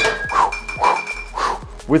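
A single glass clink as a bottle is picked up from the bar, ringing on as one thin tone for about a second.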